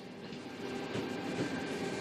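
Tangara electric train rolling slowly past at close range, a steady rumble of wheels and running gear with a faint steady hum, growing gradually louder.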